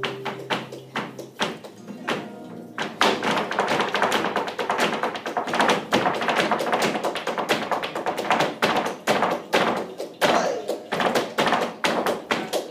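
Flamenco zapateado: a dancer's heeled shoes striking the stage in fast, dense footwork for a seguiriyas. A guitar note rings and stops about a second in, and the strikes come thick and rapid from about three seconds in.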